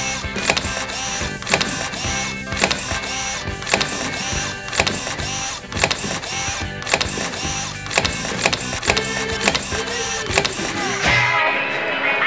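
Background music with a steady beat; the bass drops out about a second before the end.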